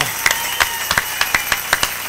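A congregation applauding: many sharp, irregular hand claps.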